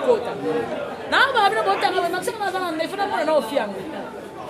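Speech only: people talking, with a brief pause about a second in.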